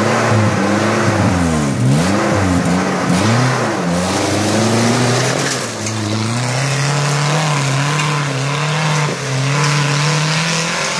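Maruti Gypsy's engine, a swapped-in 1.6-litre Baleno petrol unit, revving in quick swoops up and down as the jeep crawls over rocks, then held at higher revs that climb slowly as it pulls away up the trail.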